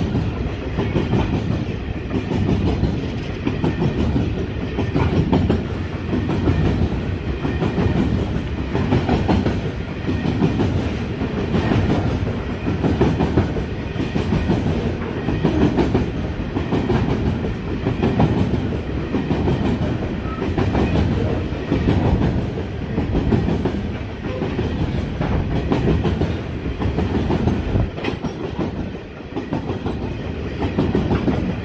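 Freight train's covered hopper wagons rolling past at speed: a steady rumble of steel wheels on rail with a regular clickety-clack, swelling and easing every second or two as each wagon's bogies go by.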